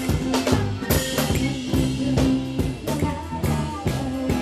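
Live folk band playing a tarantella, with a drum kit striking a steady, driving beat over sustained bass and accordion notes.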